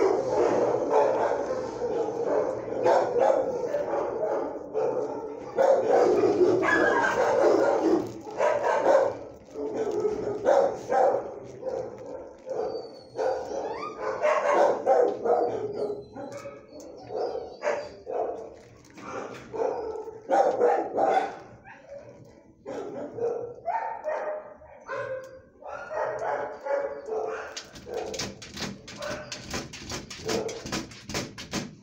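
Dogs barking repeatedly in short, irregular bursts.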